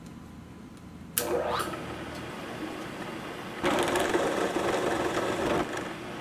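Vertical milling machine spindle switched on about a second in and running up to speed, then an end mill cutting into the metal workpiece for about two seconds before the cut ends.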